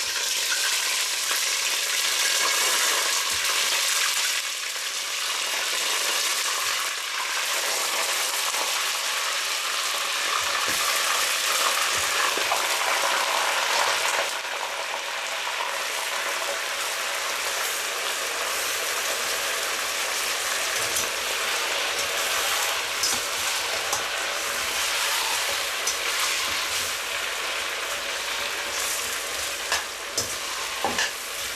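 Pieces of lamb on the bone sizzling and frying hard in hot sunflower oil in a stainless-steel pot, a steady dense crackle. A metal skimmer stirs and turns the meat now and then, giving a few light clicks.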